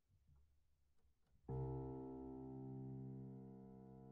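Grand piano: a single loud chord struck about one and a half seconds in, then left to ring and slowly fade, after a moment of faint room noise.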